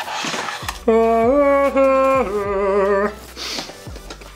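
A man singing a mock angelic-choir "aaah" in a few long held notes, starting about a second in, stepping up and back down and ending with a wavering vibrato. A brief rustle of packaging comes before it.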